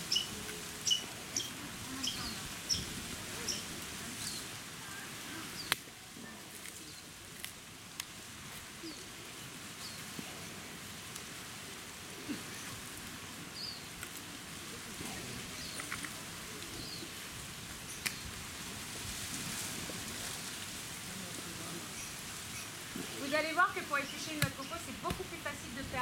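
A small bird chirping over and over, about twice a second, over low outdoor ambience in the first few seconds. One sharp knock about six seconds in, then faint scattered ticks while a coconut is worked on a husking stake. Voices come in near the end.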